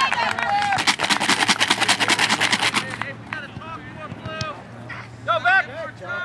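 A burst of rapid hand clapping from spectators for about two seconds, with high-pitched shouts and cheers before and after it.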